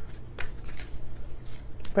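Tarot cards being shuffled by hand: a run of irregular, soft card clicks and flicks.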